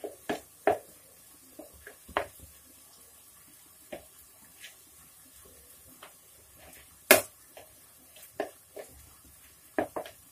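A steel spoon knocking and scraping against a plastic mixing bowl as grated coconut and spices are stirred together, in short irregular clicks. One sharper knock about seven seconds in is the loudest.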